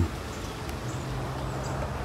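Quiet outdoor background between words: an even hiss with a faint steady low hum and no distinct event.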